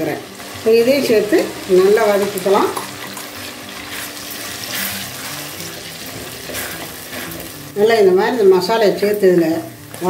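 Onions and tomatoes frying in oil in a clay pot give a soft sizzle as a thin chilli-spice paste is poured in and stirred with a wooden spoon. A woman talks over it near the start and again near the end.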